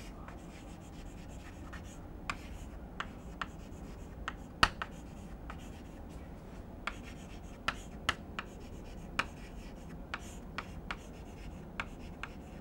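Chalk writing on a chalkboard: irregular sharp taps and short scratches of the chalk as words are written, the loudest tap about four and a half seconds in.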